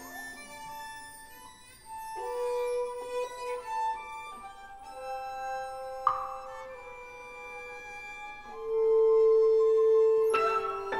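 Live chamber ensemble playing a film score: sparse held notes from flute and strings, a single sharp struck accent about six seconds in, then a louder held note near the end.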